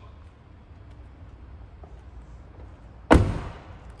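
Rear door of a 2018 Toyota Camry shut once, a single sharp slam about three seconds in that dies away quickly, after faint handling noise.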